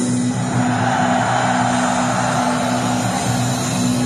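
Heavy metal band playing live with no vocals: a steady held low chord under an even wash of distorted sound.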